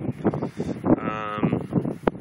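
A man's voice: brief indistinct mumbling, then a held hesitation sound like "uhh" for about half a second, starting about a second in.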